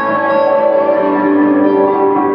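Electric guitar played through a Boss Katana 50 amp with delay and a looper, sustained notes ringing and overlapping in a layered wash.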